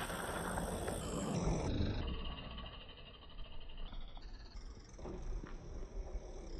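Mountain bike rolling away over a packed dirt track, the tyre and bike noise fading after about two seconds as it moves off.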